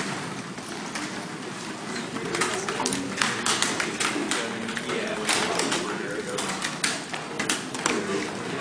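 Babble of many students talking among themselves at once, no single voice standing out, with scattered short clicks and knocks.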